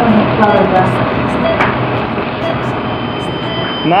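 Steady hiss and hum of operating-room background noise, with faint, muffled voices and a brief spoken "Да?" near the start.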